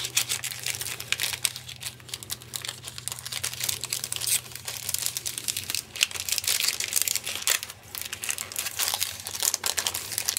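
Clear cellophane stamp packaging crinkling and rustling as a cling stamp is slid back into its sleeve, a dense irregular run of crackles throughout.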